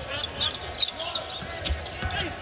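Basketball being dribbled on a hardwood court, a run of short sharp bounces, with faint voices in the arena.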